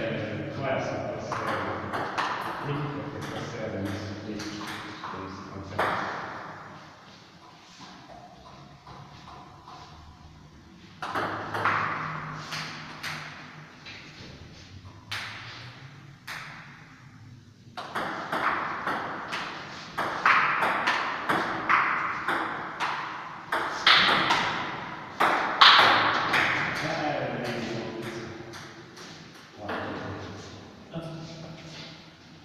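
Table tennis ball clicking back and forth off the bats and the table during rallies, in quick runs of sharp ticks, with people talking over it.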